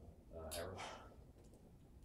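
A man's voice, a brief quiet murmur about half a second in, over low room noise.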